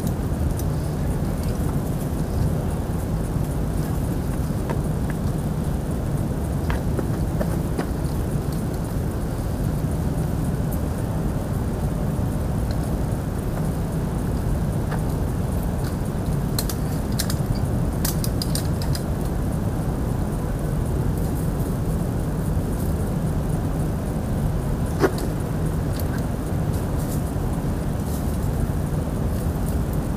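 Steady low background rumble, with a few faint clicks and clinks scattered through and a sharper click about 25 seconds in.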